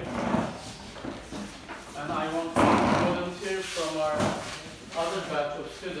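Wooden classroom chairs being shifted on the floor: a few knocks and one loud burst of scraping noise about two and a half seconds in. Students' voices chatter over it.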